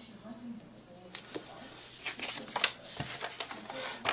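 Card stock being handled and pressed down on a table, with a Scotch ATG 700 adhesive tape gun run over the paper to lay double-sided tape. From about a second in there is irregular rustling with many sharp clicks.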